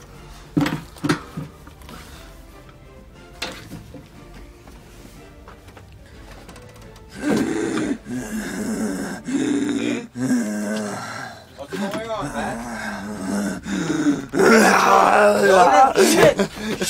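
A man's wordless voice, groaning in drawn-out stretches through the second half and breaking into loud yelling near the end; the first half is mostly quiet, with a couple of sharp knocks about a second in.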